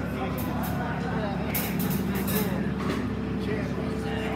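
Voices and chatter in a bar room between songs, with no music playing, over a steady low hum from the band's amplifiers.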